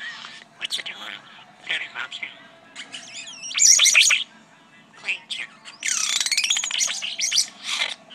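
European starling singing: a quick jumble of whistles, clicks and rattles, with two loud high-pitched stretches, one about three and a half seconds in and a longer one from about six seconds.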